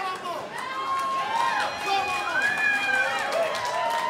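Several voices overlapping, calling and whooping without words in rising and falling pitch, over a few held tones.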